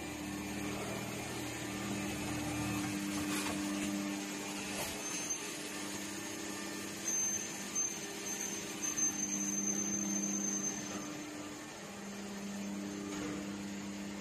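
Steady hum of a powered-on plastic injection molding machine's motor and hydraulics, with two steady tones. A deeper hum drops out about three seconds in, a faint high whine comes and goes in the middle, and there are a few short knocks about seven to nine seconds in.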